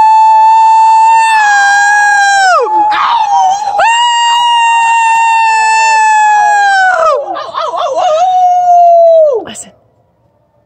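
A young man's long, very loud, high-pitched yells, each held on one steady note. There are three in a row, the first two about three seconds each, and each drops off in pitch as it ends. A short, rough, wavering stretch comes between the second and the last.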